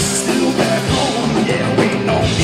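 Live three-piece rock band playing: electric guitar, electric bass and drum kit.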